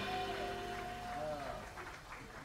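The jazz band's closing chord dying away after the final hit, fading steadily, with one held note that bends downward before stopping about halfway through; faint voices follow near the end.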